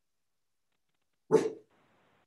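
A dog barks once, briefly, about a second and a half in.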